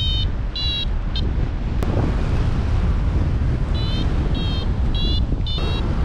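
Wind buffeting the microphone of a paraglider in flight, a steady low rumble, with a paragliding variometer's short high beeps repeating about twice a second, signalling a climb; the beeps stop for a few seconds after about one second in, then resume.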